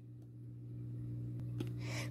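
Quiet room tone: a steady low hum with a couple of faint clicks.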